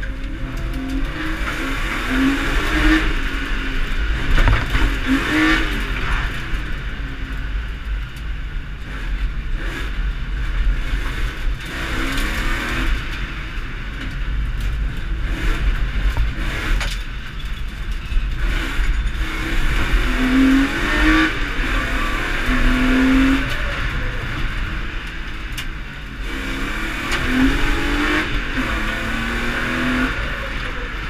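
Inside the cabin of a stripped-out BMW rally car driven hard: the engine revs up in repeated short climbs and drops back at each gear change, over steady road noise.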